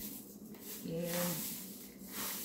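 Dry rustling of sun-dried shiso leaves as hands work and crumble them in a plastic bowl. The rustle swells about half a second in and fades near the end.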